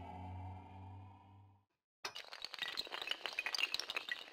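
Intro sound effects: a low hum fades out over the first second and a half, then, after a moment of silence, a rapid clatter of glassy clinks and cracks like shattering glass.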